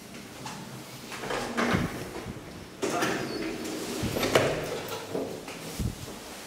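Old HVILAN elevator's manual door being slid and handled: scraping and rattling from about a second in, a sudden louder clatter near three seconds, and thumps around four seconds and again just before the end.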